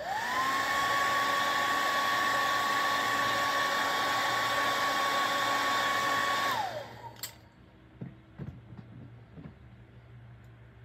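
Handheld hair dryer switched on: its motor whine rises quickly to a steady pitch over a steady rush of air, then it is switched off about six and a half seconds in and the whine falls away. A few faint taps and clicks follow.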